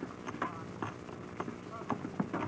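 Irregular hollow knocks of adobe mud bricks being laid and tapped into place on a dome, about two or three a second, with voices in the background.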